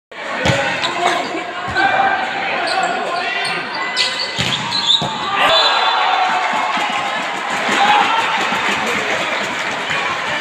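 Volleyball being served and played in a rally, several sharp echoing smacks of hand on ball and ball on floor in a large hall, over continual shouting voices of players and spectators that swell near the end.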